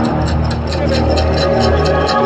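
Heavy metal band playing live in an arena, heard from the crowd: sustained low bass notes under a fast, steady ticking in the high end.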